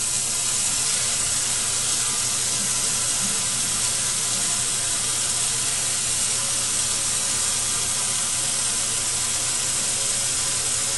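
Lab faucet running steadily into a sink through a water aspirator, the water flow pulling vacuum on a Buchner funnel's side-arm flask.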